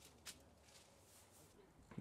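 Near silence: faint room tone with a faint click about a quarter second in.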